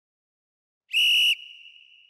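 A single short whistle blast, one steady high note held for about half a second, cut off sharply and trailing a faint echo that fades over the next second.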